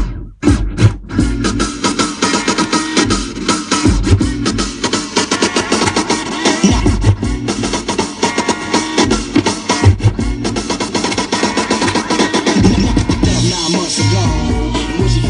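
Turntablist practice on two turntables and a battle mixer: a drum-heavy record played loud, chopped with the crossfader. The sound cuts out twice briefly just after the start, then runs on with quick cuts and a steady beat.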